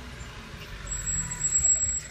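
Low rumble of a car driving slowly, heard from inside the cabin; about a second in it grows louder, with a thin high-pitched tone for about a second.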